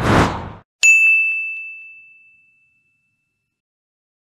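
Logo sting sound effect: a short whoosh, then a single bright ding about a second in that rings and fades away over about two seconds.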